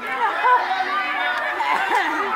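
A crowd of children's voices chattering and calling out over one another, many high-pitched voices at once.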